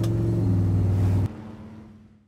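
1955 Chevrolet 150's engine running steadily on the move, heard inside the cabin as a low drone. It drops away suddenly a little over a second in, leaving a faint hum that fades out.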